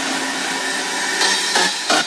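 Electronic dance music in a DJ mix breaking down into a steady hissing noise wash, with short rhythmic pulses of noise cutting in about a second and a half in, a little under three a second.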